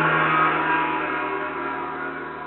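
A single struck sound with many ringing tones, hit just before and slowly fading away.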